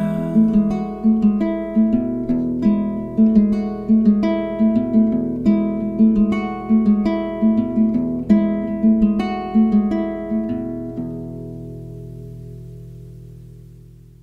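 Solo acoustic guitar playing an instrumental outro, a steady picked pattern of roughly two notes a second. About ten and a half seconds in the picking stops and a final chord rings on, slowly fading away.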